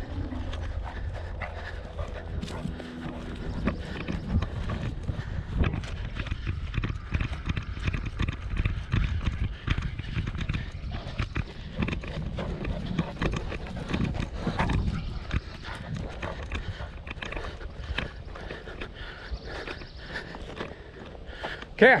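Footsteps of a person walking over dry grass and dirt, an irregular run of short rustling steps, over a steady low rumble.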